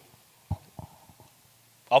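A pause in a man's talk: one short, soft low thump about half a second in and a few faint small clicks, then his voice starts again near the end.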